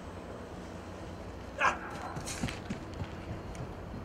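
Steady background noise of a large indoor field dome. About one and a half seconds in, a single short, loud voice-like call breaks it, and a few faint knocks follow.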